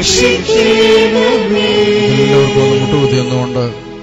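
Devotional hymn singing in Malayalam, with voices holding long, steady notes over musical accompaniment and fading near the end.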